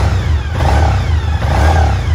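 2003 Suzuki SV1000S's 90-degree V-twin engine revved on a held throttle, the revs rising twice. It runs rough and lumpy and won't tick over on its own, as if it has dropped a cylinder or has a blocked injector.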